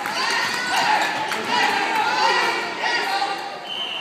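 Basketball game in a gym: many overlapping voices shouting and calling, with a basketball bouncing on the court. A steady high tone starts near the end.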